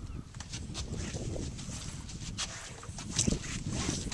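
Wind rumbling on the microphone on an open flats skiff, with scattered small splashes and knocks as the boat is poled through shallow water.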